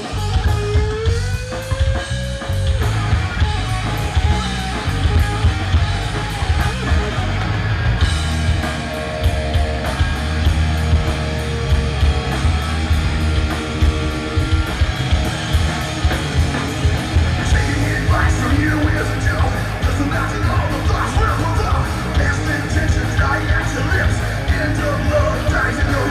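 A live rock band playing loudly: distorted electric guitars, bass and a drum kit, with a bending guitar note about a second in and vocals over the band in the second half.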